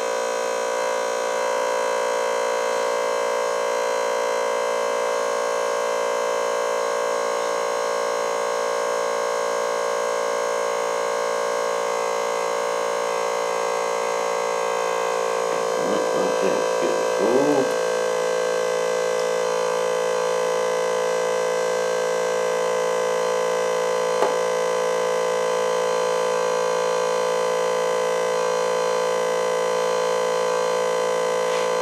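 Small electric fuel pump running with a steady whine, pumping fuel into a model jet's tanks.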